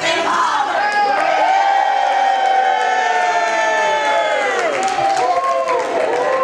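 A group of women shouting a cheer together: a long held whoop of many voices that falls away about four and a half seconds in, then shorter rising-and-falling calls.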